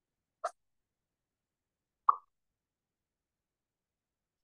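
Two brief soft clicks, about a second and a half apart, with silence around them.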